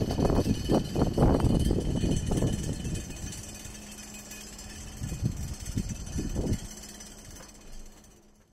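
Irregular gusts of wind rumbling on the microphone outdoors, over a steady low mechanical hum; the gusts ease off about three seconds in and return briefly around five to six seconds.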